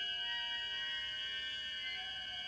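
Film score music: several high tones held steadily, with a few quieter notes shifting slowly beneath them.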